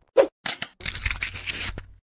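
Animated intro sound effects: a short pop, a quick swish, then about a second of scratchy, crackling hiss with a low hum beneath it.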